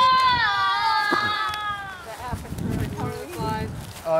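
A child's long, high-pitched squeal, held steady and then trailing off and falling slightly about two seconds in. A low rumble and faint voices follow.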